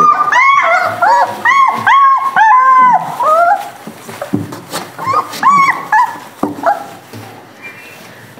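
A Great Dane puppy about 18 days old crying in quick, short, high-pitched yelps while oral dewormer is squirted into its mouth from a syringe. The cries come thick for about three seconds, then a few more follow near the middle.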